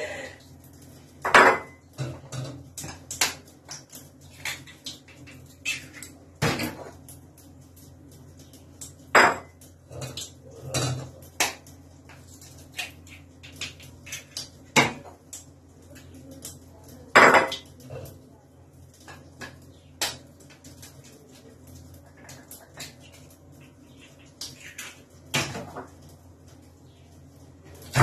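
Eggs being cracked open with a kitchen knife over a mixing bowl: sharp knocks of the blade on the shells, a few seconds apart, with smaller clinks of knife and shell against the bowl.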